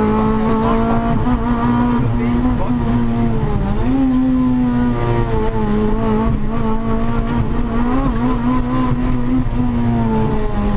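Honda Civic rally car's four-cylinder engine running hard at high revs, heard from inside the cabin. Its pitch stays high and mostly steady, dipping and jumping back up about four seconds in and shifting again a little after.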